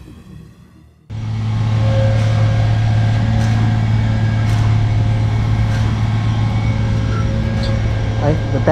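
A truck's engine running steadily with a low, even hum that starts suddenly about a second in, with a few faint ticks over it. The end of music fades out before it.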